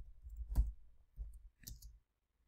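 A few scattered computer keyboard keystrokes as a short word is typed, the loudest about half a second in, over a faint low rumble.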